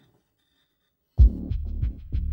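Near silence, then about halfway through a loud, deep throbbing sound starts abruptly and keeps pulsing.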